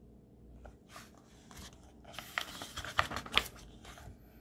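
Paper page of a picture book being turned by hand: rustling and crinkling that starts about a second in and grows busier, with a few short sharp crackles in the second half.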